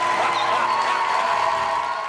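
Studio audience cheering and applauding, with music underneath holding a steady note.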